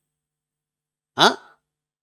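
A man's brief vocal sound into a close microphone, rising in pitch and lasting only a fraction of a second, a little over a second in; otherwise dead silence.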